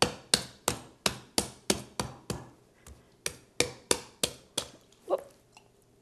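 Big chef's knife chopping into the husk of a young coconut, repeated sharp blows at about three a second, with a brief pause midway and a last, fainter blow near the end.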